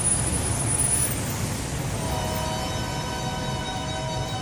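Break in a promo soundtrack: the beat drops out, leaving a steady rushing noise, joined about halfway by a held chord of several steady tones.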